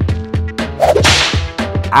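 A whip-like swish sound effect about a second in, over background jazz-funk music with a steady beat.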